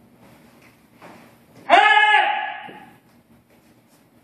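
A taekwondo kihap: one loud, drawn-out shout about two seconds in, its pitch holding and then dropping as it fades over about a second.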